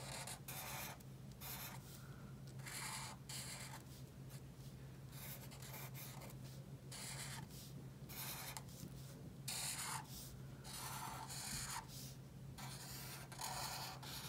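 Black Sharpie marker tip drawn across paper, tracing an outline in a series of short scratchy strokes, roughly one a second, with brief pauses between them.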